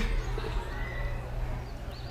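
A pause with no speech: a steady low hum of room tone, with faint background noise.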